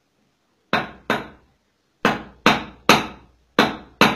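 Goldsmith's hammer striking metal on a small anvil block: about six sharp blows in uneven groups, each ringing briefly.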